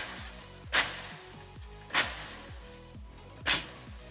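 Glass petri dish cracking from thermal shock on a 350 °C hot plate: four sharp cracks at uneven intervals, over background music.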